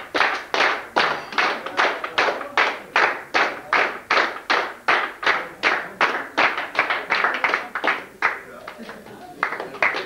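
An audience clapping in unison to a steady beat, nearly three claps a second. The clapping breaks off about eight seconds in and starts again just before the end.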